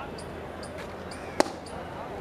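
A single sharp knock about one and a half seconds in, over steady outdoor background noise with faint high ticks about twice a second.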